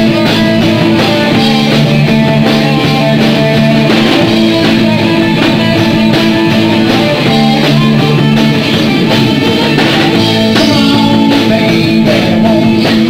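Live rock band playing loudly: electric guitars holding chords over a steady drum-kit beat.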